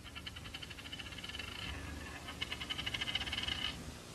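A rapid chirring trill in two bursts of about a second and a half each, with a short gap between them, over a faint low hum.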